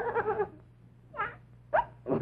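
Voice imitating the baby's cries: a short pitched wail at the start, then two brief rising squeals in the second half.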